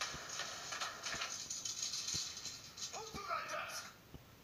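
A person's voice over a noisy clatter, with several dull knocks about a second apart.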